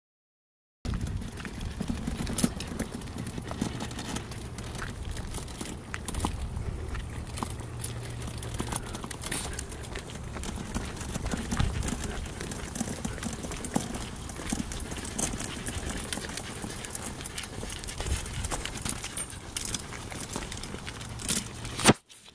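Starting about a second in, a folding pull wagon rattles and clatters continuously as it is pulled over an asphalt path, its wheels rolling and its frame knocking.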